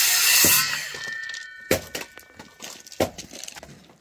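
Corded power saw cutting through old pallet wood. The cut ends under a second in and the saw's whine fades away, followed by two sharp wooden knocks.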